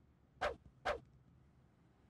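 Two brief cartoon sound effects, about half a second apart, as the animated letter blocks step into place and join hands.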